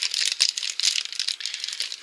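Crinkling and rustling of a thin plastic blind bag being worked open by hand, an irregular run of quick crackles.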